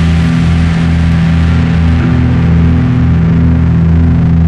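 Heavy metal music with no vocals: low, heavily distorted guitars and bass holding sustained chugging notes at a steady loud level.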